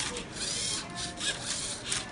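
LEGO Mindstorms Rubik's Cube–solving robot at work: its motors whir in short bursts, with brief rising and falling whines, as the arm tilts the cube and the cradle turns it. The cube's plastic layers rub and click as they are flipped and twisted.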